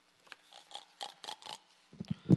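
A faint, quick run of light rustles and clicks, about seven in under two seconds.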